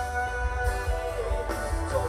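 A live pop-rock band playing an instrumental passage through the PA: electric guitar leads over held keyboard chords, bass and a steady drum beat, with no singing.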